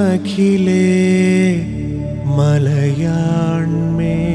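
Malayalam vocal song accompanying a Mohiniyattam dance: a singer holding long, ornamented notes in two phrases, the second starting a little past halfway, over a steady low drone.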